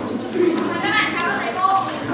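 A class of children's voices sounding together in chorus, with some notes held and wavering in pitch.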